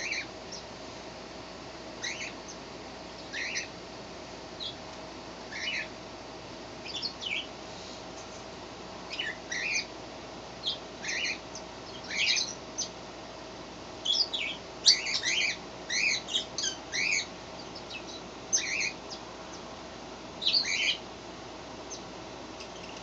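A small bird chirping in short, high, irregular calls, coming thicker about halfway through and again near the end, over a faint steady hum.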